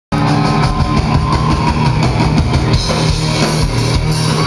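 A rock band playing live and loud, with distorted electric guitar, bass and a drum kit pounding out a steady beat, and no vocals yet. The sound starts abruptly a moment in.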